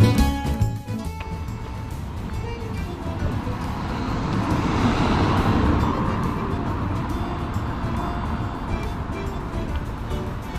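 A road vehicle driving past: its noise swells to a peak about halfway through, then slowly fades. Background music cuts out about a second in.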